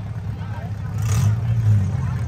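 Vehicle engines running with a steady low rumble, a little louder in the second half.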